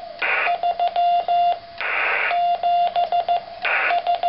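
Morse code sidetone from a homemade brass-clip paddle working an electronic keyer: a steady tone of about 700 Hz keyed in dots and dashes, with short bursts of hiss in the gaps between characters.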